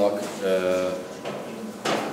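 A man's voice holding a drawn-out, even-pitched hesitation sound between phrases, then a sharp click or knock shortly before the end.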